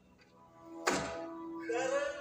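A single loud thunk about a second in: the actor dropping down onto a hollow wooden stage bench. A steady held note follows, and a voice starts near the end.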